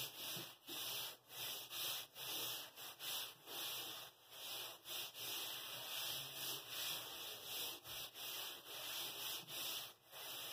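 A Barbicide disinfectant wipe in a gloved hand rubbing across the top of a treatment bed in quick, repeated back-and-forth strokes, a soft hissing swish that dips briefly between strokes.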